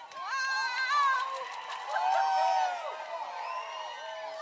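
A crowd cheering and whooping, several high voices calling out over one another, loudest about a second in and again around two seconds in.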